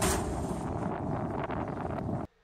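Soundtrack of a vlog playing back on a computer: a dense, noisy rumble with many small crackles and a faint steady tone underneath, like outdoor wind on a microphone.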